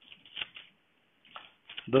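A few brief, soft rustles of paper, pages being turned, with short pauses between them; a man's voice starts up near the end.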